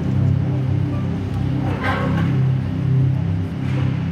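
Live stage keyboard playing slow, sustained low chords as a background pad, the notes shifting every second or so.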